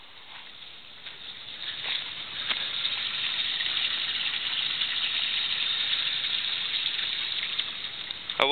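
Water pouring from a pond biofilter's return hoses and splashing into the pond, a steady hiss that comes up over the first couple of seconds and then holds. The water falls about a foot and a half to aerate the pond.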